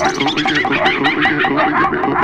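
Techno in a breakdown: the kick drum is dropped out, leaving a fast, evenly repeating electronic synth pattern of short notes that bend in pitch.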